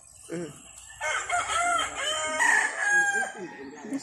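A rooster crowing once: a single long call of about two seconds, starting about a second in.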